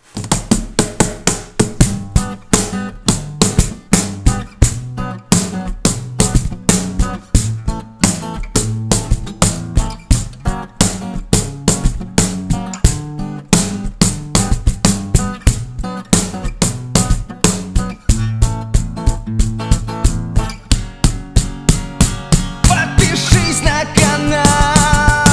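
A homemade plywood cajon played by hand in a steady beat, with about four strokes a second, over an acoustic guitar.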